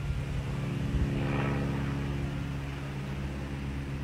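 A small plane's engine running steadily, a constant drone, as the plane flies into a headwind strong enough to hold it still over the ground.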